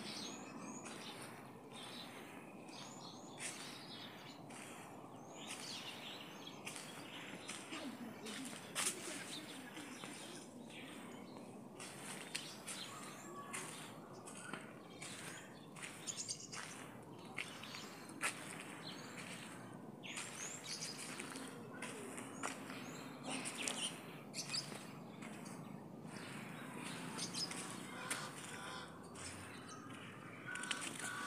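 Birds chirping and calling, with footsteps on a wet dirt road and steady outdoor background noise.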